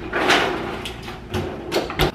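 A fridge freezer drawer sliding open and shut, with a few knocks as it is handled.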